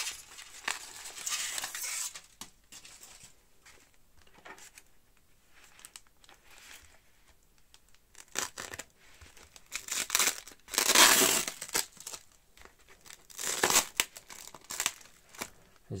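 Aluminium foil and plastic wrapping crinkling as they are handled and peeled off a foam-wrapped container. Then clear packing tape and film are slit with a craft knife and torn away, the loudest tearing about eleven seconds in and again near fourteen seconds.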